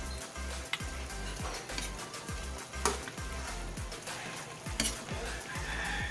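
A spatula stirring and scraping braised pork and chicken in a large aluminium wok as the sauce sizzles, with three sharp clanks of the spatula against the pan.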